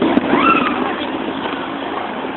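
Fireworks going off at night: one sharp pop right at the start, then a brief rising tone about half a second in, over a steady rushing background noise.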